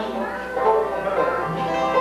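Banjo and acoustic guitar playing bluegrass, with an upright bass in the band.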